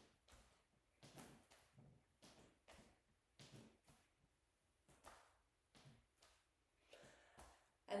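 Faint, soft taps of the outer edge of a hand on the meaty upper-shoulder muscle, in a steady rhythm of about two a second as the body twists side to side.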